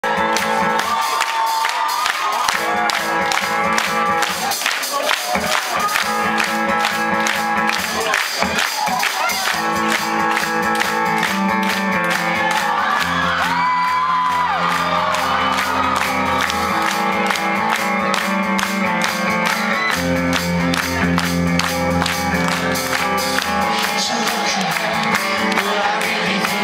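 Rock band playing live, guitars and drums with a steady beat, with the crowd shouting and cheering along.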